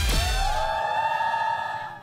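Editing sound effect: a quick downward swoosh, then a single held synthesized tone that slides up slightly, holds, and fades away.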